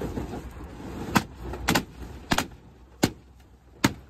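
Latex balloons of a garland being burst one after another inside a car's cargo area: five sharp pops, about half a second to a second apart.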